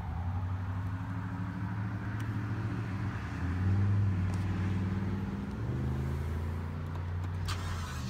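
Rolls-Royce Ghost's twin-turbo V12 starting and idling, heard from inside the cabin. The idle rises and gets louder about three and a half seconds in, then settles. A single click near the end.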